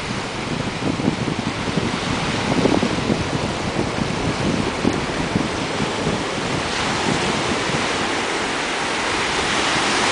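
Sea surf washing and breaking near the shore, with wind buffeting the microphone in gusts; about seven seconds in, the hiss of breaking surf grows stronger.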